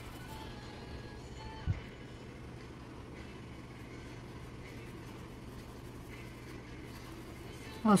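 Steady low hum with faint room noise, and one soft low thump about two seconds in.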